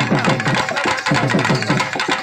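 Live Tamil folk band of thavil drum and nadaswaram playing dance music. Fast drum strokes, about five a second, each dropping in pitch, run under steady held nadaswaram notes.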